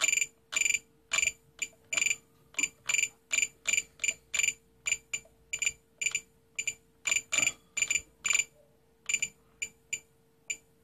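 Spektrum DX8 radio transmitter beeping once for each step of its scroll roller, short high beeps two or three a second, as the mix rate is stepped up to 100%. There is a short pause near the end.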